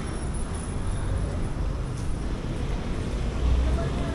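Street ambience: a steady low rumble of road traffic that swells briefly near the end, with faint voices of people on the street.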